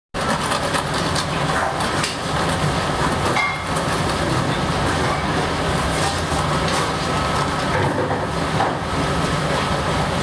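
A loud, steady machine-like rush of kitchen background noise, with many small crackles as a knife cuts through the crisp skin of a whole roast pig.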